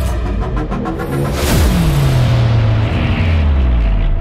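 Dark cinematic music sting: a fast pulsing for the first second, a whoosh about one and a half seconds in with a falling low sweep, then a deep, loud sustained bass.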